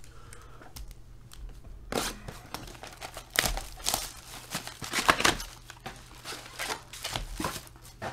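Plastic shrink wrap being torn off a trading-card box and crumpled by hand, a string of crackling, tearing bursts starting about two seconds in and stopping shortly before the end.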